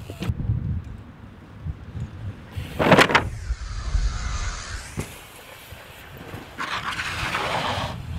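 Mountain bike tyres rolling fast on tarmac, with a loud clatter about three seconds in as the bike hits the folding ramp, then a rush of air. A single sharp knock follows about five seconds in.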